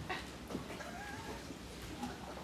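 A wooden chair knocking and creaking faintly as a man sits down on it: two light knocks, then a short wavering squeak.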